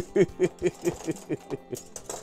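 A man laughing: a run of short ha's, about four or five a second, getting fainter.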